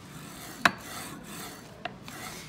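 Handling noise from a Wanhao D8 3D printer's Z-axis assembly: the loosened linear rail and platform plate are shifted by hand, giving a low rubbing and scraping. A sharp click comes about two-thirds of a second in and a fainter one near the end.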